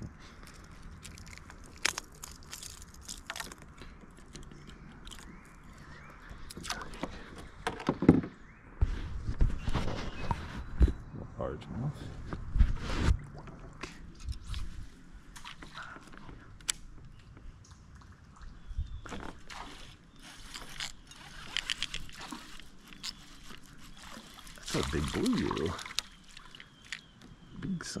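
Handling noises while fishing from a plastic kayak: scattered clicks and knocks of rod, reel and tackle, with a run of low thumps partway through.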